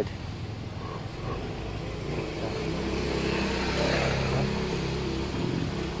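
Motorcycle tricycle's small engine running as it comes up the road, growing louder over the first few seconds and then holding steady.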